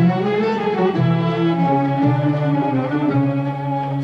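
Instrumental interlude of a Turkish art song in makam Segâh, played by a bowed-string ensemble of violins and cello in long held notes that change slowly. Singing comes back in right at the end.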